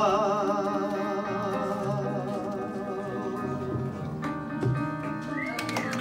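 A singer's long held note with wide vibrato fades away over piano chords, which carry on as the song ends and shift to a new chord about four seconds in. Near the end the audience starts clapping and whooping.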